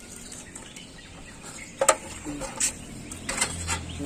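Handling noise from an old bicycle as it is moved and turned: one sharp click a little before two seconds in, then a few lighter knocks.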